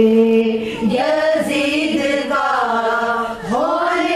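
Two women singing a devotional manqabat (qasida) together without instruments, one into a microphone, in long held notes that bend slowly in pitch.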